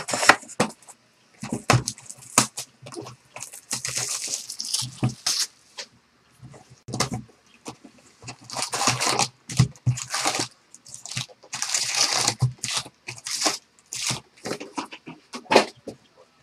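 A sealed box of baseball cards being opened and its foil-wrapped packs pulled out and stacked: several bursts of tearing and crinkling wrapping, among sharp taps and clicks of cardboard and packs being set down.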